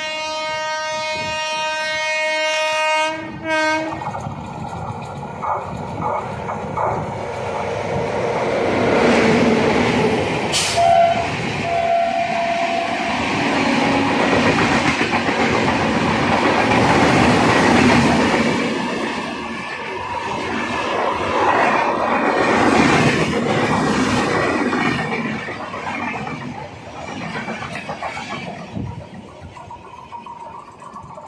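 A train horn sounds for about three and a half seconds, then the rush and clatter of a passenger train passing on the adjacent track builds, is loudest about halfway through, and fades. It is heard from the open door of a moving train, over that train's own wheel noise.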